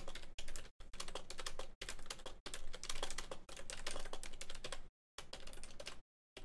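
Computer keyboard typing, a rapid run of keystrokes with a few short pauses where the sound drops out entirely.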